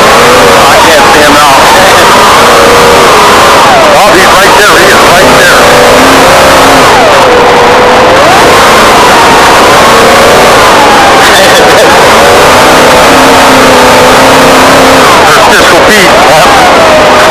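Off-road race Trophy Truck's engine heard from inside the cab, its pitch rising and falling again and again as the throttle is worked over rough dirt, under a constant loud rush of road and wind noise.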